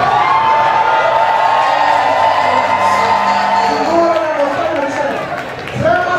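A long, high held vocal cry into a microphone, lasting about four seconds, with a crowd cheering beneath it.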